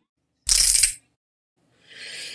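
A short, bright metallic jingle about half a second long, coming about half a second in: an edited-in sound effect at the end of the intro.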